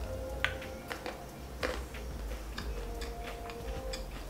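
Chewing a dark chocolate rice crisp: irregular small crunches, with faint music playing in the background.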